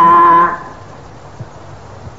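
A man's voice holds a long, level, chant-like syllable at the end of a sermon phrase and breaks off about half a second in. Then comes a pause with only faint recording hiss.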